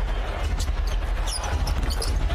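Basketball game sound: steady arena crowd noise with a basketball being dribbled on the hardwood court and a few short high squeaks of sneakers.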